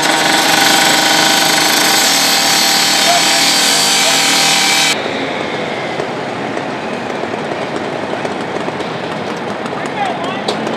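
Gas-powered rescue saw running at full speed at a metal gate, a steady high-pitched engine whine with a harsh, gritty edge. It cuts off abruptly about halfway through, leaving a steady, quieter rushing noise.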